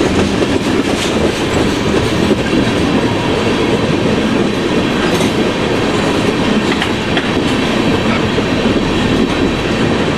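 Freight train cars rolling past on steel rails: a steady rumble of wheels on track, with a few scattered clicks.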